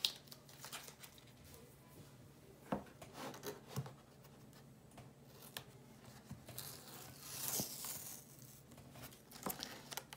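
Artist tape being peeled slowly off the edge of heavy cotton watercolour paper: a faint tearing crackle with scattered small ticks, louder for a couple of seconds about two-thirds through.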